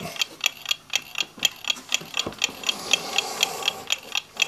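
A mechanical clock ticking with a quick, even beat, with one dull knock a little over two seconds in.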